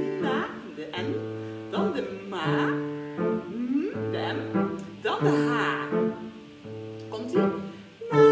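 Grand piano playing a repeating chord accompaniment in an even rhythm, with a voice singing short phrases of a children's song over it.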